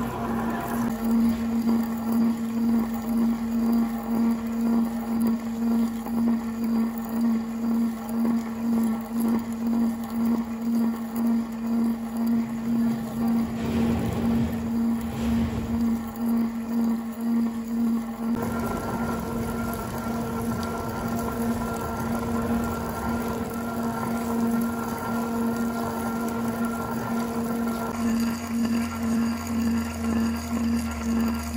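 Long 40 mm-shank boring bar cutting a bore in 4140 steel on a bed mill. It hums with a steady low tone that swells and fades about twice a second, the bar vibrating because of its length. About 18 seconds in a higher whine joins it.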